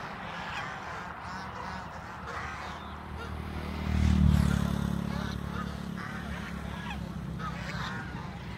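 A flock of domestic geese honking, many short calls overlapping one another. About four seconds in, a louder low rumble swells and then fades over a couple of seconds.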